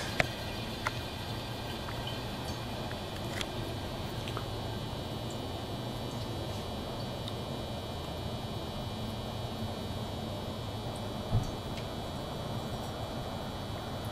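Benchtop algae centrifuge running at speed: a steady, even high whine over a low hum, with a few small ticks and one brief knock about eleven seconds in.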